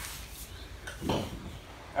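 A man speaking one short word about a second in, over a steady low background hum.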